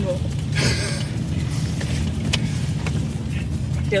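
Steady low rumble of a car interior while driving, with a short burst of noise about half a second in and a single sharp click a little after two seconds.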